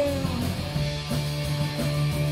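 Live rock band playing an instrumental stretch with no singing: electric guitars holding chords over bass and steady drums.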